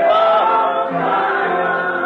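A group of voices singing a slow hymn in held, gliding notes, on an old recording with little treble.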